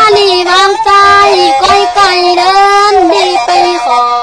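A woman singing a Tai Lue khap song in long held notes that bend in pitch.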